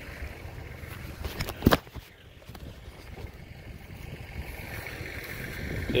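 Wind buffeting the microphone, with dry, dead grass and weeds rustling as someone walks through them. One sharp knock comes a little under two seconds in.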